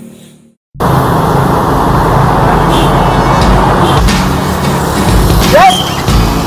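Silence for under a second, then loud, steady road traffic noise with a deep rumble.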